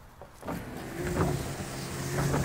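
Rivian R1T powered tonneau cover closing: its electric motor starts about half a second in with a steady hum as the slatted cover slides over the truck bed. There are a few faint knocks, the loud, jerky clunking of the cover mechanism.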